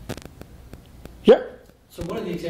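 A few faint clicks, then about a second and a half in a single short, loud vocal sound from a person, sweeping up in pitch.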